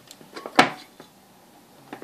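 A sharp clack about half a second in, then a few light clicks, as leads are handled and unplugged at a mains power block.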